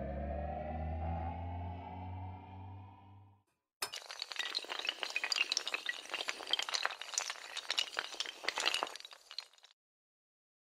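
Synthesized intro sound effects: a rising swell over a low hum that fades out about three seconds in. After a brief gap comes a long, rapid clatter of many small hard pieces tumbling, lasting about six seconds.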